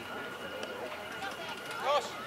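Voices calling and shouting across an open sports field, with one louder shout near the end.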